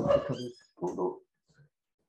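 A dog barking, two short sounds in the first second followed by a faint third.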